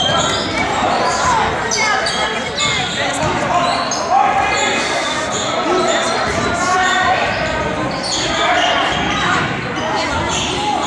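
Basketball game in a gymnasium: a basketball bouncing and sneakers squeaking in short bursts on the hardwood court, with players and spectators calling out. The sound echoes in the large hall.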